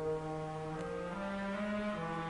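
Orchestral wind instruments holding a sustained chord of long, steady notes, the lowest part stepping up in pitch a little after a second in.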